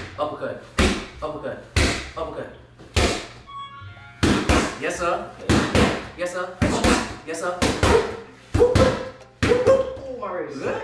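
Boxing gloves landing punches on training pads, about a dozen sharp smacks at uneven intervals, some thrown in quick pairs.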